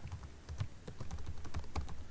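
Computer keyboard typing: a quick run of about ten keystrokes, each a short sharp click.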